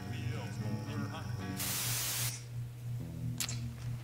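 A group singing along to an acoustic guitar. About a second and a half in, a loud, sharp hiss lasting under a second cuts across the song, and a low steady hum and quieter music follow.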